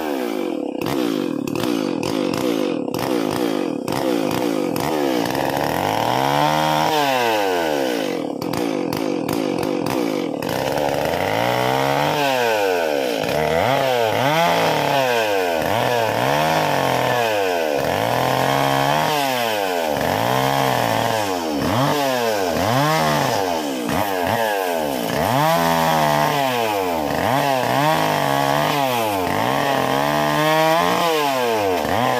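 Chainsaw cutting through the branches of a felled tree: held at high revs for the first ten seconds or so, then revved up and dropped back about once a second through a run of short cuts.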